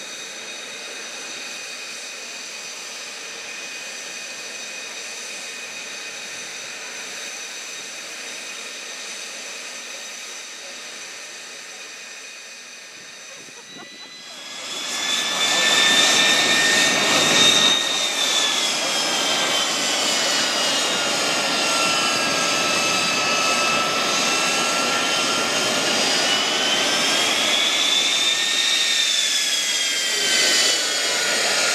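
Ivchenko AI-25TL turbofan of an Aero L-39 Albatros jet trainer running on the ground, a steady whine at a distance at first. About halfway through it becomes much louder and close by, its high whine sliding down in pitch and back up again.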